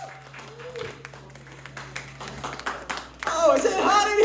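Scattered audience clapping in a room, then a loud shouting voice starting about three seconds in.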